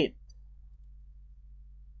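The last syllable of a spoken word cuts off right at the start, leaving a faint, steady low hum of room tone.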